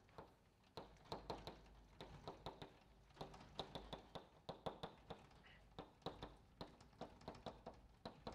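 Chalk tapping and scraping on a blackboard as capital letters are written: a run of faint, quick ticks, about three or four a second.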